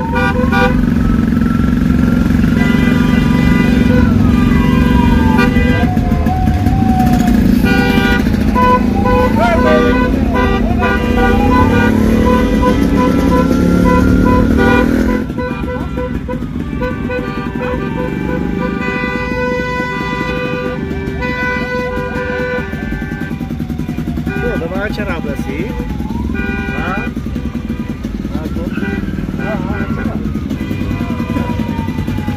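Car horns of a convoy honking repeatedly in long and short blasts, over engine and tyre noise. The sound drops in level about halfway in.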